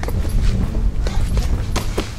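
Strikes landing on a hanging heavy punching bag: about six sharp thuds in quick succession, roughly one every third of a second, from arm and knee strikes.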